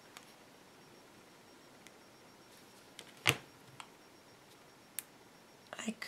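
Quiet room with a few light clicks and taps from mosaic tiles and a glue bottle being handled on a cutting mat. The sharpest click comes about three seconds in.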